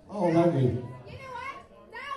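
Voices: a loud, deep voiced sound falling in pitch near the start, then quieter high-pitched voices talking.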